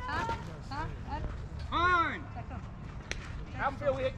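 People calling out and chattering around a baseball field, with one loud drawn-out call about two seconds in and a single sharp click a little after three seconds.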